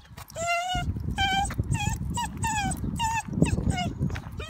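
Dachshund whining in a run of about seven short, high, wavering whimpers, protesting at being led away from home on the leash. A low rumble runs underneath.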